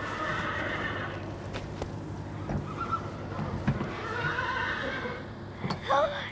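Horses whinnying, two long calls a few seconds apart, with a couple of soft knocks in between.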